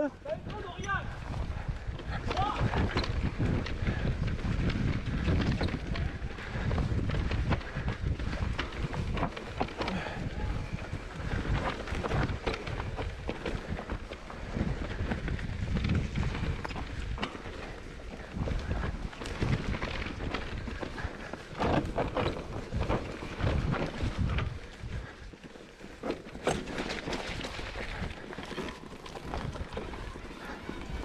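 Mountain bike riding down a dirt forest trail: tyres rolling over dirt and roots, the bike rattling and clattering over bumps, with wind rushing over the microphone.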